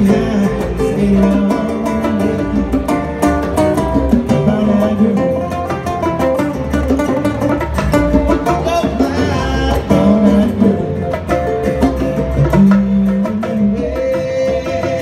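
A small live band playing: acoustic guitars and other plucked strings over congas and cymbal, with a steady rhythm of sharp plucked and struck notes.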